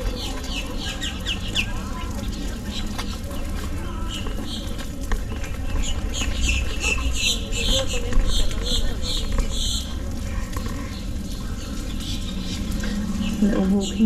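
Birds chirping in quick runs of short high notes: a string of falling chirps near the start and a longer series of repeated chirps from about six to ten seconds in, over a steady low rumble.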